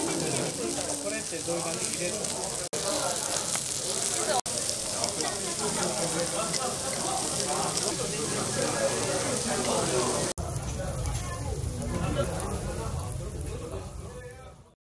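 Pork cuts sizzling on a round Korean barbecue grill plate, with voices chattering behind. After a cut about ten seconds in, the sizzle thins and a low rumble takes over.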